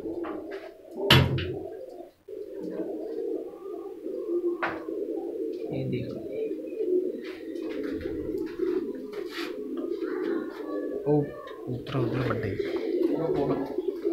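A loft full of domestic pigeons cooing together, a continuous overlapping cooing chorus, with a sharp knock about a second in and a few lighter clicks.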